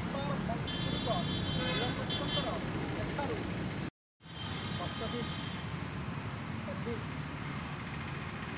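Outdoor ambience of people talking in the background over steady traffic noise, with a brief gap of silence about four seconds in where the sound is edited.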